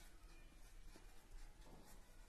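Faint rubbing of a felt-tip marker on paper, in short strokes as handwritten letters are formed.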